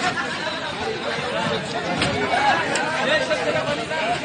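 Several men's voices talking over one another, indistinct chatter with no single voice standing out.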